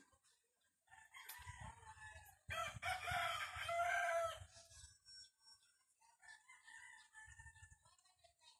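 A rooster crowing: one long crow starting about a second in and loudest in its second half, then a fainter crow near the end.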